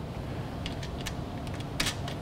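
A few light clicks and taps as the cap of an impact-jet apparatus is fitted back onto its clear cylinder, the sharpest near the end, over a steady low hum.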